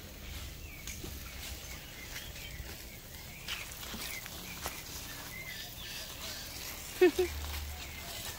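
Dry branches and dead leaves being picked up and moved, with scattered faint knocks and rustles over steady outdoor background noise. A short voice sound comes about seven seconds in.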